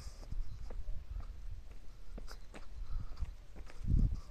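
Footsteps on a paved street, irregular, with knocks and thumps from the phone being handled while walking. The loudest thump comes near the end.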